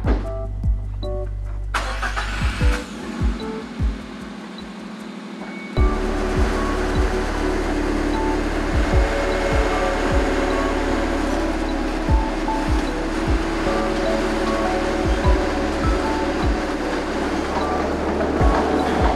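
Background music with a steady low rumble beneath it and scattered low thuds; the music swells into a fuller, sustained texture about six seconds in.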